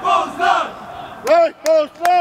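Football supporters chanting in unison: short shouted calls, then two loud, drawn-out shouts that rise and fall in pitch, in a steady rhythm near the end.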